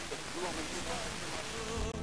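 Weak long-distance FM radio reception of a Greek song in mono: a faint, wavering melody under steady static hiss. This is a sporadic-E signal about 1415 km away, barely above the noise.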